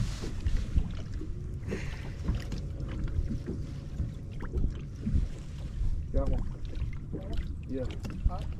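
Wind buffeting the microphone and small waves lapping against a bass boat's hull: a steady low rumble with scattered small knocks, and faint voices near the end.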